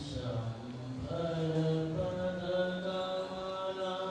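A man's voice chanting a devotional verse in a slow, sung melody, holding long steady notes.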